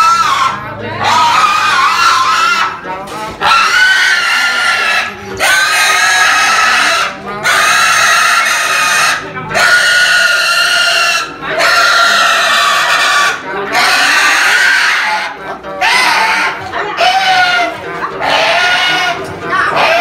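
A pig squealing loudly as it is slaughtered, in a string of long screams of about two seconds each with short breaks for breath between them. Near the end the screams become shorter.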